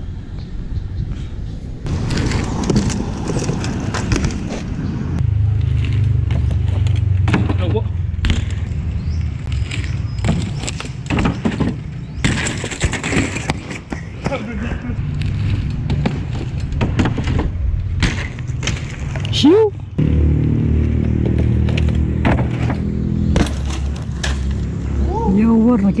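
BMX bikes on concrete: a low rolling rumble broken by many sharp clattering knocks as bikes land and drop to the ground, with voices now and then.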